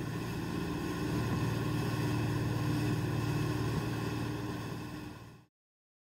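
Motorboat running at speed: a steady engine drone over the rush of the churning wake, fading out and going silent about five and a half seconds in.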